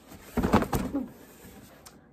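A large cardboard box being lifted and fumbled: a quick cluster of knocks and scrapes about half a second in, with a brief "oops".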